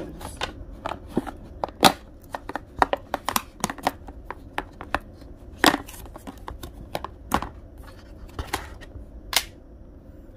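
Thin clear plastic takeaway container being handled and its snap-on lid prised off: a run of irregular sharp plastic clicks and crackles, with a few louder snaps.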